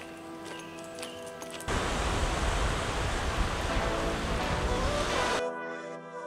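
Background music with steady tones, joined about two seconds in by loud, even rushing water that cuts off suddenly near the end while the music plays on.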